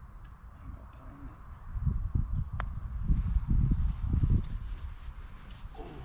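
A golf club striking the ball once in a short chip, a single sharp click a little past halfway, over low rumbling noise on the microphone.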